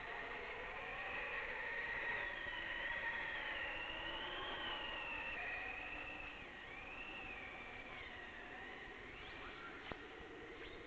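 Mountain wind howling: a steady rush with thin whistling tones that waver slowly up and down. A short click comes just before the end.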